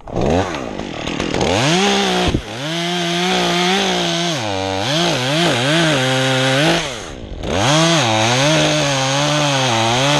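Top-handle chainsaw cutting into an oak trunk, its revs rising and sagging as the chain bites into the wood. It comes off the throttle briefly twice, a couple of seconds in and again about seven seconds in.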